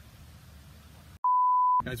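Faint background noise that cuts to dead silence a little over a second in, followed by a single steady pure beep of about half a second, an edited-in censor-style bleep. Speech starts right after it.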